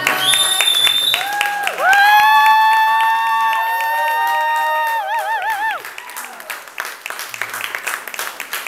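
A high voice singing long held notes that slide into pitch, ending with a wavering note about five seconds in, while the audience claps. The singing stops about six seconds in, and scattered applause carries on.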